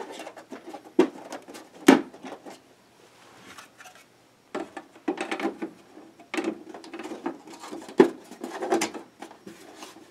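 Plastic hull panels of a large toy vehicle being handled and snapped into place: a run of clicks, knocks and scraping, with sharp clicks about one, two and eight seconds in and a short lull in between.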